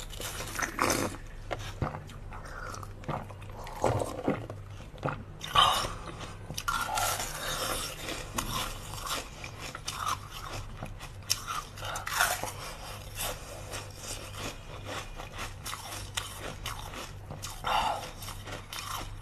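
A woman biting and chewing a bun-shaped block of ice, close to the microphone: irregular sharp cracks and crunches as it breaks between her teeth, with a faint steady low hum underneath.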